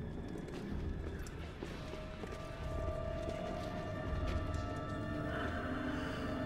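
Dark, tense film score: a low rumble with held notes that come in about two seconds in, and a few faint clicks over it.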